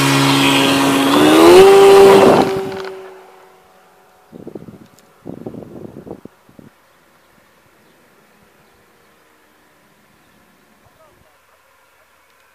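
Electric motor and propeller of an A.R.O. model Fox RC glider under power at launch, its whine rising in pitch as it speeds up, then fading away within about three seconds as the model climbs off. A few brief noisy bursts follow about four to six seconds in.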